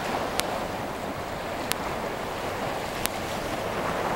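Choppy estuary water washing and wind on the microphone make a steady rushing noise, cut by three short, sharp, evenly spaced clicks about a second and a third apart.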